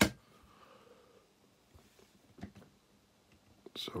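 One sharp knock at the start, as the meter is handled on the desk, then quiet, faint handling noise while a wire is held to the meter's circuit board for soldering.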